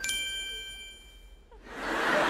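A single bright, bell-like ding struck once, ringing with several clear tones and fading away over about a second and a half: a transition chime marking a jump ahead in time.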